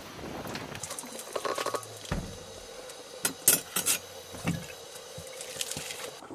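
Mugs and dishes being handled: scattered clinks and knocks, with a cluster of sharp clicks a little past the middle that is the loudest part.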